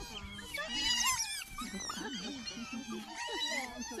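A family group of otters calling together: many high-pitched squeaks and chirps overlapping continuously.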